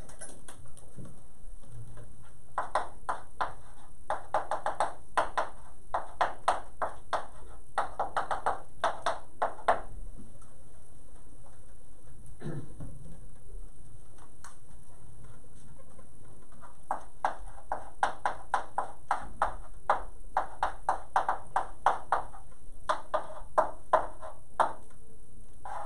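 Chalk writing on a chalkboard: runs of quick taps and scratches as equations are written, stopping for several seconds in the middle before starting again.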